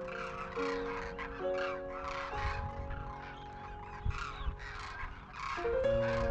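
Background music with slow held chords that change every second or so, over a flock of birds calling, many short calls overlapping.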